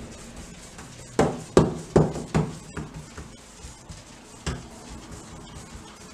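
Paintbrush strokes on a wooden door panel, with a quick run of about five sharp knocks a second in and a single knock near the middle.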